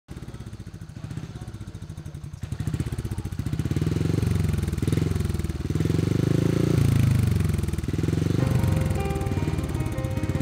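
Motorcycle engine running at a low, pulsing idle, then revved up and down several times, each rev rising and falling in pitch. Music with steady notes comes in about eight seconds in.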